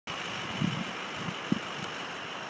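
Steady outdoor background noise with a few soft low thumps and a short click about one and a half seconds in.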